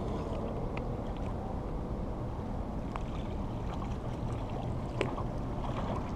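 Steady low rumble of wind and water at the water's edge, with a few faint clicks.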